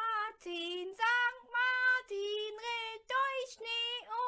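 A child singing a German St. Martin's song in slow, held, high notes.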